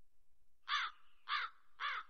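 A bird calling three times in a row, about a second apart, each call short and harsh.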